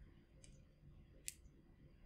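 Near silence: faint room tone, with a soft click about half a second in and a sharper, louder click just past a second in.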